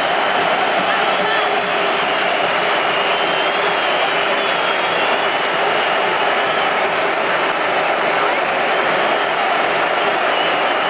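Steady, loud noise of a large football stadium crowd, thousands of supporters shouting and cheering, with no break in it.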